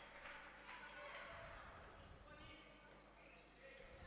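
Near silence: faint sports-hall ambience from a handball game, with distant voices.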